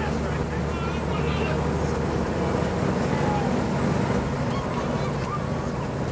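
Fire engine's diesel engine and road noise heard inside the cab while driving, a steady low drone, with faint voices in the background.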